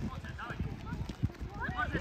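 Children's high-pitched shouts and calls across a football pitch, in short scattered bursts over a low, buffeting rumble. One sharp thump comes a little past the middle.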